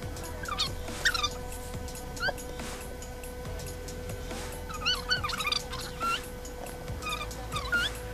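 Short high-pitched whining calls from an animal, in scattered groups, over a faint steady hum.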